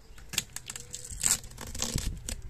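Sealing tape being torn and peeled off the lid of a bee nuc box, in a few short, noisy rips and rustles.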